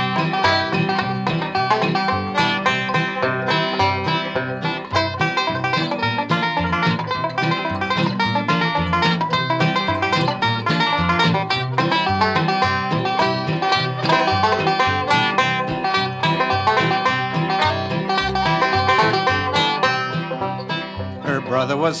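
Instrumental break in an old-time country song: a five-string banjo picks a quick, steady melody over strummed acoustic guitar. Singing comes back in near the end.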